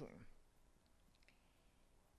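Near silence: room tone in a pause between spoken words, with a few faint clicks about a second in.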